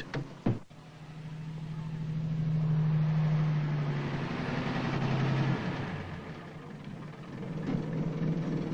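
A bus engine running, its sound growing louder over the first few seconds. The engine note drops about four seconds in and the sound then fades away.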